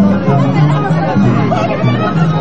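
Andean orquesta típica playing a dance tune, saxophones with harp and violin, with people talking over the music.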